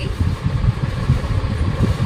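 A steady low rumble in the background, like an engine or traffic.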